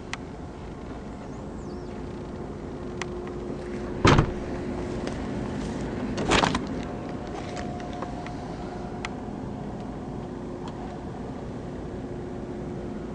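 Two sharp knocks inside a car cabin about two seconds apart, the first the louder, over a steady low hum with a few faint clicks.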